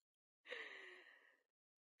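A person's soft, breathy sigh, starting about half a second in and fading out over about a second, its pitch falling slightly; otherwise near silence.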